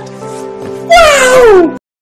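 Background music with a loud, drawn-out meow-like call about a second in that falls steadily in pitch; all sound cuts off abruptly near the end.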